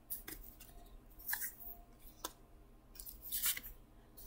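Oracle cards being handled and laid down on a table: a few faint, scattered slides and light taps of card stock.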